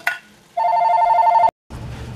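An electronic ringing tone: two steady pitches trilling rapidly together for about a second, then cut off suddenly.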